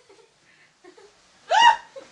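A quiet pause, then one short, sharp vocal burst from a person about one and a half seconds in, a brief yelp- or laugh-like sound rather than words.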